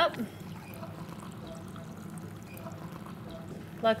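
Brewed coffee pouring from a glass French press into a ceramic mug: a steady, even trickle of liquid.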